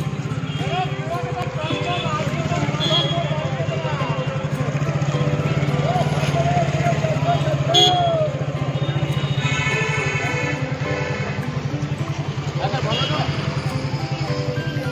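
Busy bus-stand bustle under background music: people's voices over the steady low rumble of an engine running. A short, sharp sound stands out about eight seconds in.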